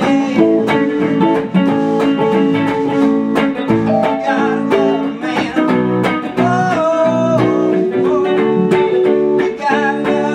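Electric guitar and keyboard playing a rock song together, with a man singing along.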